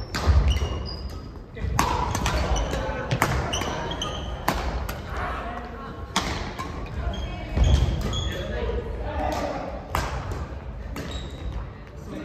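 Badminton rally on an indoor court: rackets striking the shuttlecock about once a second, heavier thuds of footsteps on the court floor, and short high squeaks, with voices in the background.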